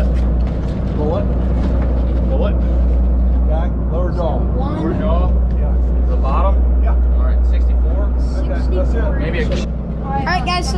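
Boat engine running with a steady low drone throughout.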